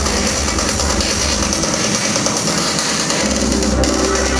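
Psytrance played loud over a club sound system, recorded from within the crowd. The kick and bass drop out for about a second and a half midway, then come back in near the end as the high hiss cuts off.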